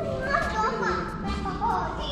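Children's voices talking and calling out, higher-pitched than an adult's.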